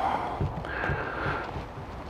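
Quiet outdoor background noise, a low rumble with hiss, and a faint hum near the middle; no distinct event.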